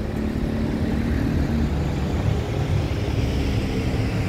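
Steady street traffic noise: a motor vehicle's engine running with a low hum.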